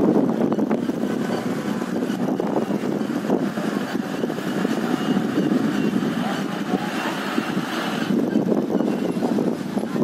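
Street traffic: vehicle engines running on the road below, with a steady rumble and voices mixed in.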